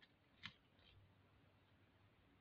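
Near silence: faint room tone, with one faint click of coins as a gloved hand picks a nickel out of a pile, about half a second in.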